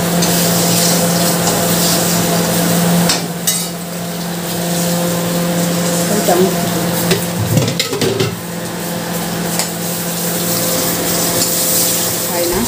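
Spice paste frying in oil in an aluminium kadai, a steady sizzle, with a metal spatula stirring and knocking against the pan now and then. A steady low hum runs underneath.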